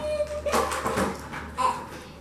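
Thin clear plastic packaging tray crinkling and rattling as it is pulled off and handled, with a run of crackles about half a second in and another shortly before the end.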